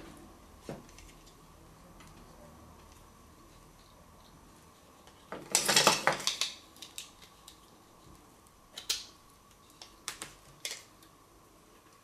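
Small plastic clicks and rattles from the removed motor and gear unit of a Philips AquaTouch shaver being handled and worked in the fingers, with a busier run of rattling about five and a half seconds in and a few single clicks later.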